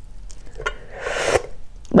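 Fingertips picking and peeling shell off a boiled balut (fertilized duck egg), with a few faint clicks and then a short rustling crackle about a second in.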